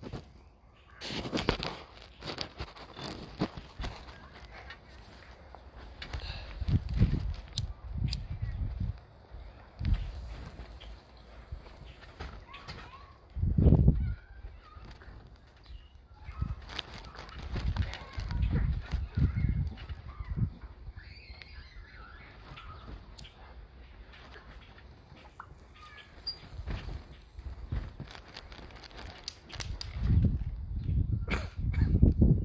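Dull thumps and rustling of a child tumbling through somersaults on a trampoline mat, coming in bursts every few seconds, the loudest about fourteen seconds in.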